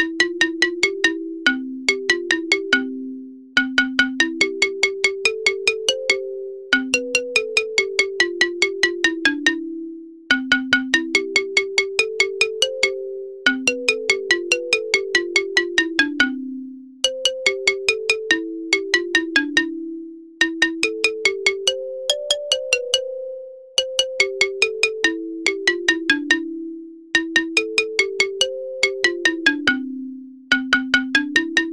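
Background music: a simple, bright melody of short notes that each start sharply and fade quickly, several to the second, played in phrases of a few seconds with brief gaps between them.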